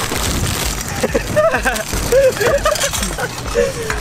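Plastic wrapping and a plastic bag rustling and crinkling as a packaged snack is pulled out, followed from about a second in by boys' voices and laughter.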